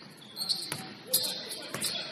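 Basketball being dribbled on a hardwood gym floor, about four sharp bounces, with sneakers squeaking on the court.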